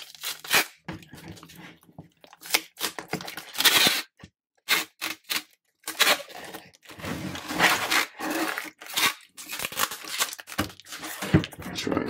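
Wide clear packing tape being pulled off a handheld tape gun in a series of rasping strips onto a cardboard mailer. The pulls are uneven in length with short pauses between them, and there is a brief break about four seconds in.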